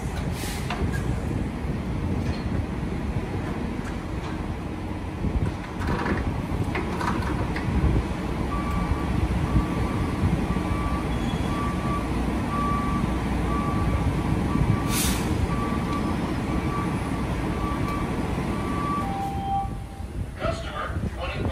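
Steady low rumble of idling diesel truck engines at a truck-stop fuel island, with a few clanks and a short hiss. From about eight seconds in, a repeated beeping at a single pitch.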